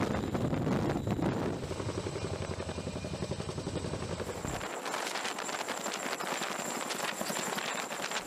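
Heavy-lift helicopter hovering overhead, its rotors beating in a steady rapid pulse. About halfway through the sound loses its deep rumble and turns thinner.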